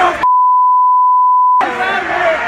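A single steady electronic beep tone lasting about a second and a half, dubbed over the audio as a censor bleep so that everything else drops out. Crowd shouting and noise come just before and just after it.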